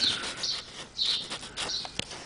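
A small bird chirping a few times, short high chirps about half a second apart, over faint background hiss.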